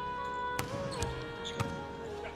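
Music with long held notes, over three sharp knocks about half a second apart: a volleyball being bounced on the court floor before a serve.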